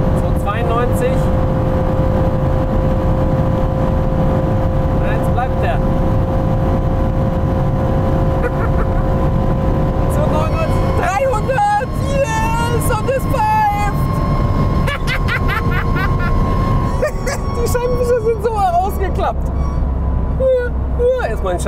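Cabin noise of an Aston Martin Vantage F1 Edition at about 295 km/h: its twin-turbo V8 with heavy wind and road noise. A steady whistle runs through the first half, and wavering high squeals and a second whistle come in from about halfway. Above 290 km/h this car whistles and squeaks and switches on its own windscreen wiper.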